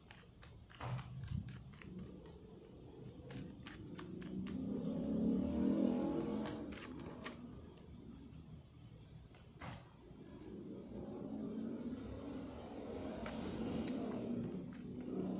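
Oracle cards being shuffled and handled, a scatter of sharp clicks and snaps, over low road-traffic noise that swells and fades as vehicles pass.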